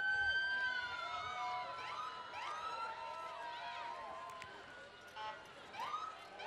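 Police car sirens sounding, several at once: overlapping tones gliding up and down, with short rising sweeps, growing fainter toward the end.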